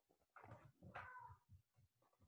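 Near silence, with two faint short sounds about half a second and about a second in.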